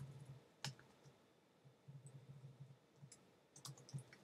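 A few faint, scattered computer keyboard keystrokes as code is typed, the clearest about two-thirds of a second in and a quick cluster near the end, over a faint on-and-off low hum.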